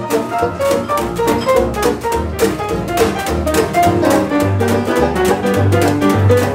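Live small jazz band playing an instrumental chorus, with no singing. It moves on a steady beat over a low bass line.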